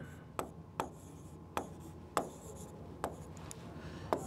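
Pen or stylus writing on a tablet surface: faint scratching strokes with about six light, irregularly spaced taps as strokes are started.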